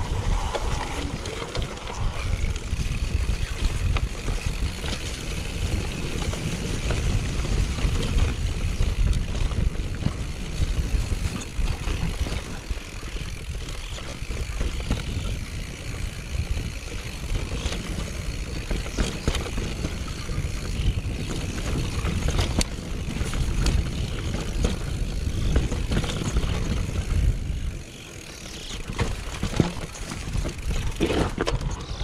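Mountain bike rolling down a dirt and rock singletrack: a steady rumble of wind on the microphone and tyres on the ground, with scattered clicks and rattles from the bike over stones. The noise eases briefly near the end.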